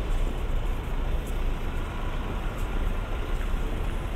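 Road traffic: a steady low rumble of cars passing along a city street.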